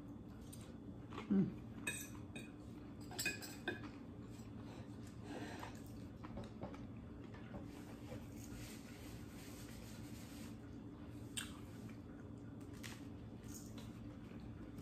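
Knife and fork clinking and scraping against a plate as food is cut, a few scattered clinks over a faint steady low hum.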